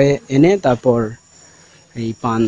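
A man's voice speaking for about the first second and again at the very end, over a faint, steady, high-pitched insect trill in the background.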